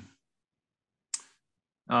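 A pause in a man's speech over a remote call: near-dead silence with one short, sharp click about a second in, then his voice resumes at the very end.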